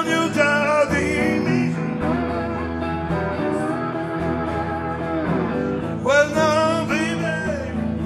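Live blues band playing electric guitars and drums, with a lead line whose notes bend, strongest at the start and again about six seconds in.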